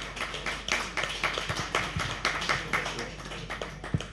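A few people applauding: quick, uneven hand claps that thin out near the end, with one sharp thump just before they stop.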